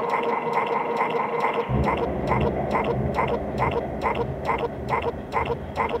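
Modular synthesizer patch playing an even rhythm of short pulses, about three a second. A held higher tone drops out about two seconds in, and a low bass drone comes in at the same moment.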